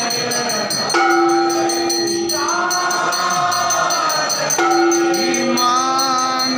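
Devotional aarti singing by a group of voices, with long held notes, over a rapid, even metallic jingling of about four strokes a second.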